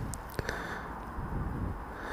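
Quiet outdoor background rumble, with one short, light click about half a second in as a phone is handled to start filming.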